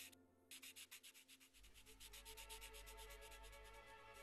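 Faint, fast, evenly repeated scratching of a pen on paper, with a short break near the start, over faint held notes of music.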